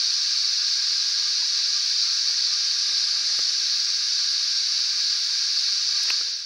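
A steady, high-pitched hissing drone that holds one even level throughout.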